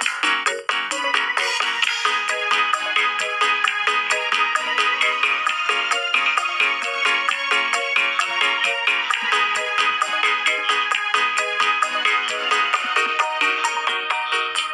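Arranger-keyboard accompaniment played on the ORG 2021 Android app: a fast, even drum rhythm under a melody on the suling (bamboo flute) voice, with chords moving from E minor to A minor. It has phone-app sound, with almost no bass.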